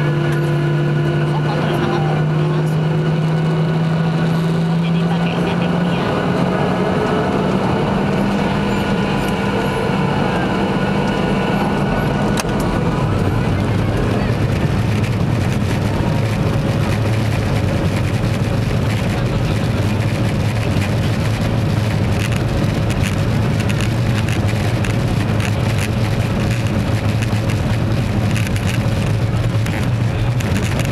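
Boeing 737-800's CFM56 turbofan engines heard from inside the cabin, spooling up for takeoff: the engine tone climbs in pitch over the first several seconds. From about thirteen seconds in, it settles into a lower steady drone over a growing rumble as the takeoff roll gathers speed.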